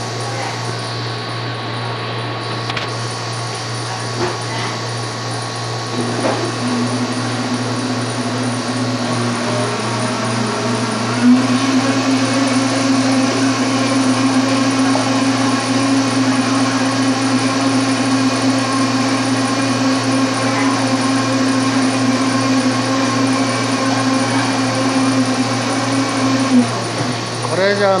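An electric motor runs with a steady hum, starting about six seconds in, getting louder about eleven seconds in and cutting off shortly before the end. Underneath it is a constant low hum of shop equipment.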